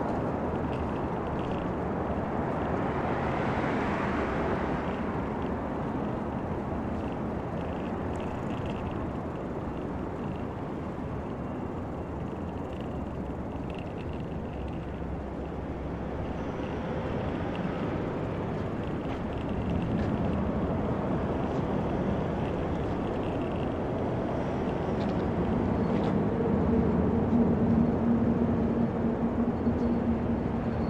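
City road traffic: a steady wash of cars and engines, with one vehicle passing close about four seconds in. A low engine hum grows louder near the end.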